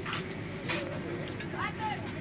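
Steady low rumble of a bus heard from inside the passenger cabin, with a couple of short hissy noises in the first second. A young girl's voice starts talking near the end.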